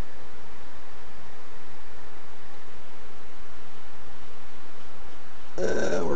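Steady background hiss with no distinct events in it.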